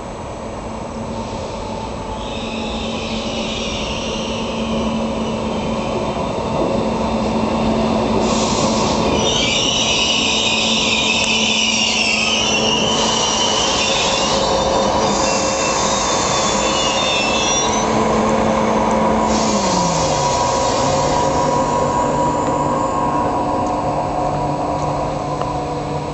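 A PKP Intercity ED250 Pendolino electric train running into a station and slowing: the rolling noise builds over the first several seconds, with high squealing from the wheels and brakes in stretches. A steady electric whine drops in pitch about twenty seconds in as the train loses speed.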